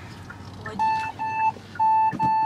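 A car's electronic beeper sounding short, identical mid-pitched beeps in pairs: two about a second in, then two more near the end.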